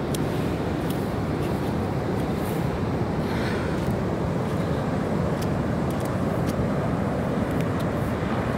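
Ocean surf breaking on the beach: a steady, unbroken rush of waves.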